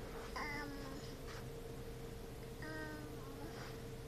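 A toddler's two soft, high-pitched hums, short, level-pitched and about two seconds apart, over a faint steady hum.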